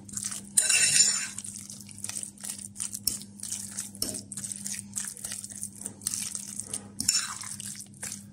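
A metal fork stirring and mashing a thick ricotta and eggplant filling in a bowl, its tines clicking and scraping against the bowl's side, with a louder scrape about a second in. A faint steady low hum runs underneath.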